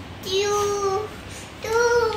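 A high voice holding two long sung notes, the second higher than the first and sliding down at its end.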